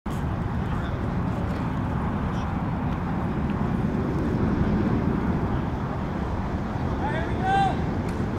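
Steady low rumble picked up by a paintball gun's barrel-mounted camera microphone, with indistinct voices mixed in and a short call near the end.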